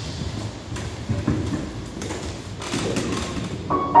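Footsteps and scattered thuds on a hard floor, then near the end the first notes struck on a grand piano.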